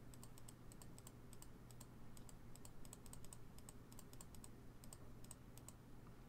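Faint typing on a computer keyboard: quick, irregular keystrokes throughout, over a steady low hum.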